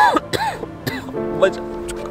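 A man's short pained vocal sounds, two brief throaty cries in the first half second, over background music of steady held notes.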